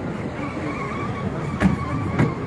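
Outdoor car-park noise with cars and faint voices in the background, and a single sharp thump about one and a half seconds in.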